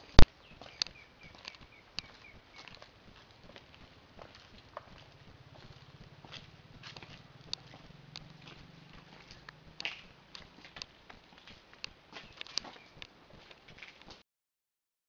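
Handling noise from a handheld camera being carried on foot: scattered clicks and taps with footsteps, the loudest a sharp click just after the start. A short run of high pips sounds about a second in.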